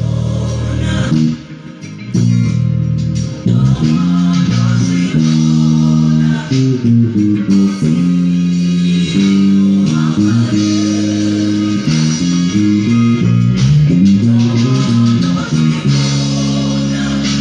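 Electric bass guitar played fingerstyle, a melodic line of held and stepping notes with a short break about one and a half seconds in, over the song's backing track.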